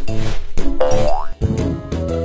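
Cheerful children's-song backing music with a cartoon sound effect for a falling toy: a short rising 'boing'-like glide about a second in.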